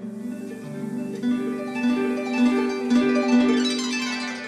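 Live band playing a slow instrumental intro, a melody of held notes stepping from one pitch to the next, as backing for a recited poem.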